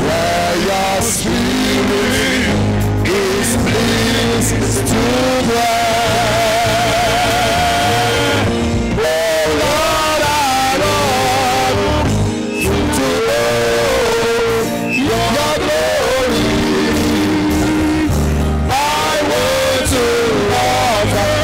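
Live worship music: a man's singing voice, with long held notes and a wavering held note about a third of the way in, over a steady instrumental accompaniment.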